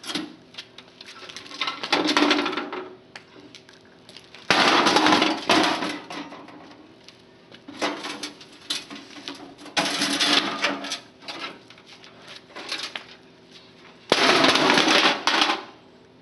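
A CRT monitor's metal-and-plastic case being tipped and tumbled end over end across concrete, scraping and clattering in five loud bursts of about a second each, with lighter knocks between them.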